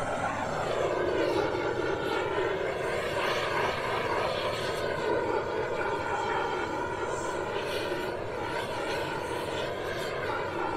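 An engine running steadily, its drone wavering slowly in pitch.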